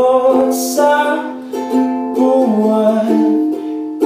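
Ukulele strumming chords, with a voice singing along in long held notes without clear words.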